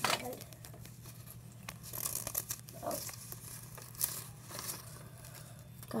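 Crayon scratching on a paper cutout in short strokes, with the paper rustling as it is handled.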